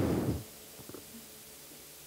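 The last of a lecturer's word through a handheld microphone trails off, then quiet room tone of the hall with a faint tick about a second in.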